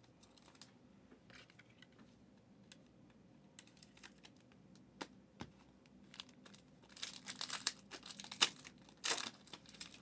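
A few faint clicks of hands handling a card in its plastic sleeve. Then, from about seven seconds in, the foil wrapper of a trading-card pack is torn open and crinkles loudly for a couple of seconds.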